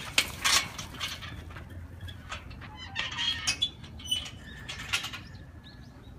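Irregular rustling and scuffing, like quick footsteps and movement over a dirt path with fallen dry leaves, coming in uneven bursts. A faint thin steady whistle sounds in the last second or so.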